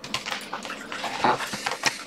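A small dog scrambling up onto a seated person's lap, with a run of irregular clicks and scratches from its claws and body against the person and the chair. A short "oh" from the person comes about a second in.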